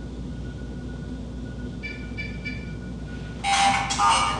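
Ghost-hunting electronic meter going off: a steady faint electronic tone over a low hum, a few short beeps about two seconds in, then a sudden loud, harsh alarm-like burst near the end.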